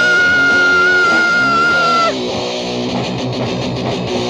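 Lo-fi hardcore punk rock recording: a long held high note rings over the band and cuts off about two seconds in, then the guitar-driven band carries on.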